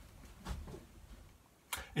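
Quiet room tone with a soft low thump about half a second in, and a quick breath in near the end just before speech.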